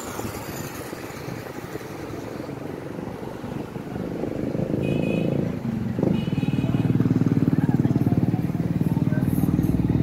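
Street traffic, then a motorcycle engine running close by with a fast, even pulse. It grows louder about halfway through and stays loud. Two short high-pitched tones sound near the middle.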